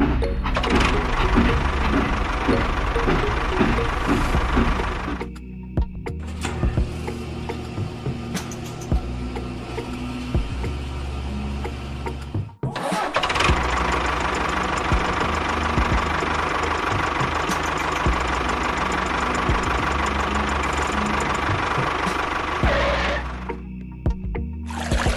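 An engine-like running sound mixed with background music. The texture changes abruptly about five seconds in, and the sound drops out for a moment about halfway through.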